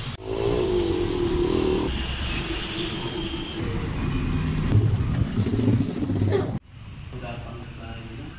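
Street ambience of road traffic and indistinct voices. About two-thirds of the way through it cuts off abruptly to a quieter indoor room sound.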